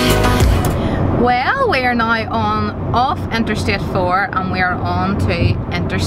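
Music with a heavy beat cuts off within the first half second. After that comes the steady road noise of a car driving on the interstate, heard from inside the cabin, under a woman's talking.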